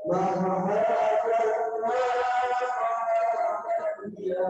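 Male voices chanting a melodic Maulid recitation into microphones: one long, drawn-out sung phrase, with short breath breaks at its start and end.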